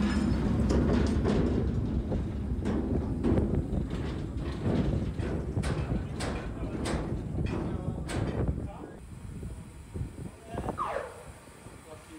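Steel mine cars rolling and clanking on rails as miners push them by hand: a heavy rumble with a string of metallic knocks that dies away about nine seconds in.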